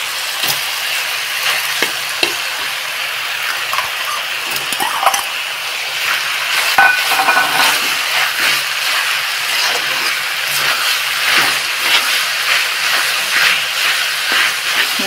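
Minced mutton, potatoes and capsicum sizzling in hot oil in a kadhai, with a spatula scraping and clinking against the pan as it is stirred. The strokes come more often in the second half.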